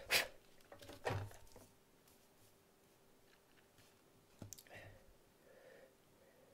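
Quiet workbench handling noises: a few soft clicks and rustles as a soldering iron is picked up and brought to the contacts of a model locomotive, over a faint steady hum.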